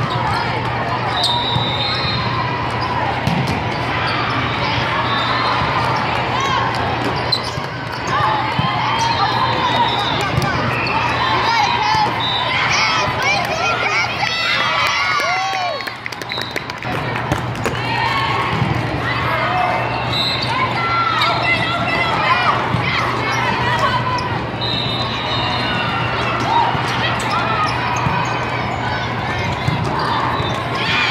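Volleyball being played in a large hall: the ball struck in rallies, with players and spectators talking and calling out throughout.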